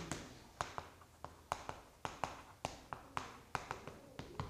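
Chalk striking and dragging on a chalkboard as words are written: a dozen or so sharp, irregular clicks.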